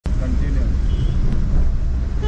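Steady low rumble of a car on the road, engine and road noise, with faint voices.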